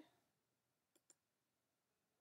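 Near silence, broken about a second in by two faint clicks in quick succession: a computer mouse click choosing New Guide from Photoshop's View menu.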